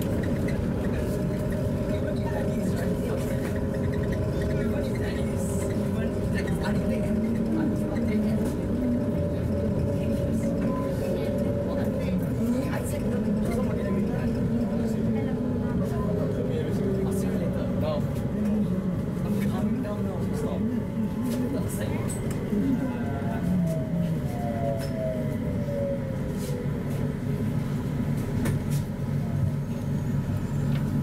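Rubber-tyred Punggol LRT train (Mitsubishi Crystal Mover) running along its elevated guideway, heard from inside the car: a steady rumble with motor tones, and a falling motor whine in the second half as it slows into a station.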